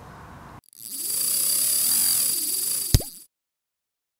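Logo sting sound effect: a bright, shimmering whoosh that builds for about two seconds and ends in one sharp plop-like hit, then cuts off suddenly.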